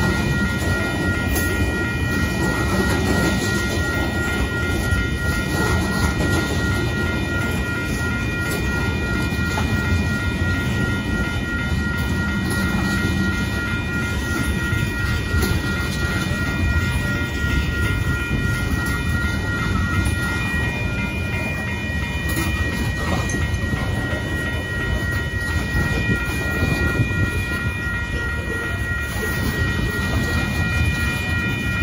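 Union Pacific mixed freight train's cars rolling steadily past, a continuous rumble of wheels on rail with clickety-clack. Over it, the grade-crossing signal's bell rings steadily, as it does while the gates are down.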